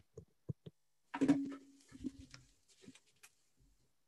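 Handling noise from a headset microphone being swapped: scattered clicks, rustles and small knocks, with a louder rustle about a second in. A short laugh comes at the very start.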